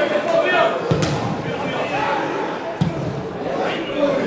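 A football struck twice, with sharp thuds about a second in and again near three seconds, among players' shouts and calls echoing around an empty stadium.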